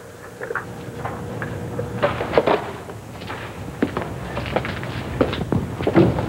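Irregular knocks and clicks: a desk telephone handset being hung up and footsteps on a hard office floor.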